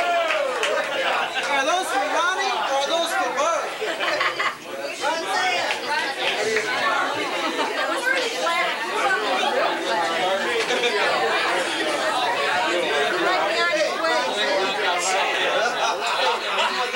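Several people chatting at once in a room, overlapping voices with no single speaker standing out.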